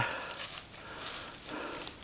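Footsteps rustling and crunching through dry fallen leaves on a forest slope, in soft irregular patches.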